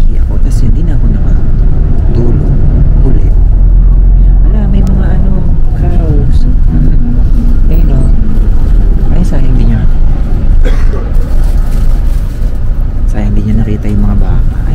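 Steady low rumble of a moving coach bus heard from inside its cabin, with a man's voice talking over it.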